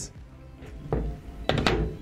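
A probe being fitted onto the end of the eXp 6000's telescopic rod: a dull thunk about a second in, then a sharper click and knock near the end as it seats. Background music plays under it.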